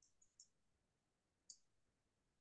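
Near silence broken by a few faint, sharp clicks: three in quick succession at the start and one more about a second and a half in.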